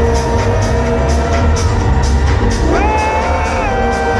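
Electronic dance music from a live DJ set over a club sound system, with a heavy, steady bass beat. A held melodic note glides up and sustains about three seconds in.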